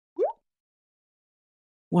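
A single short blip near the start that rises quickly in pitch, followed by silence. A man's voice begins just at the end.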